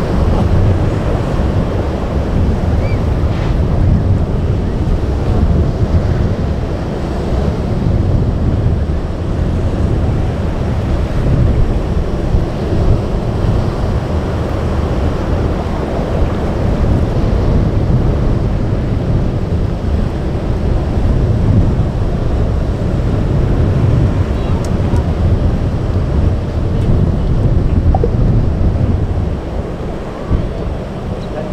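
Wind buffeting the microphone over a steady wash of breaking surf, with a heavy low rumble throughout.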